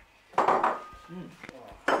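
Metal fork clinking against a dinner plate about half a second in, leaving a brief ring, then a lighter tap of cutlery a second later.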